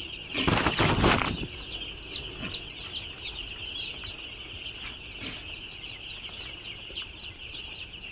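A crowd of small broiler chicks cheeping continuously, many short high chirps overlapping into a steady chorus. A brief loud rustle comes about half a second in.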